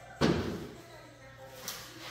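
A single loud slam about a quarter second in, dying away over about half a second, followed by a faint sharp click near the end.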